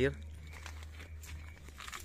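A low steady hum with faint rustling and scattered light clicks, after a man's voice stops at the start.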